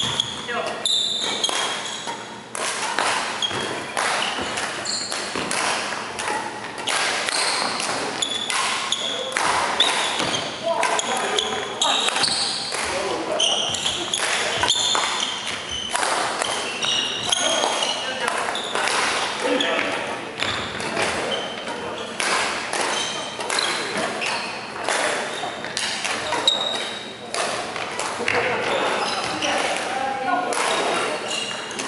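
Badminton rally in a large echoing hall: repeated sharp racket strikes on the shuttlecock and short high squeaks of court shoes on the wooden floor, with voices of other players throughout.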